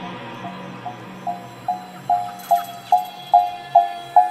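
Electronic music in a DJ mix: a short pitched synth stab repeats a little over twice a second, growing steadily louder over a fading low pad, like a build-up.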